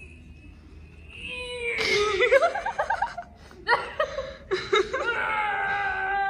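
Laughter breaking out about two seconds in, in choppy, wavering bursts that carry on to the end.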